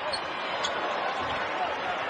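A basketball being dribbled on a hardwood court, over steady arena crowd noise.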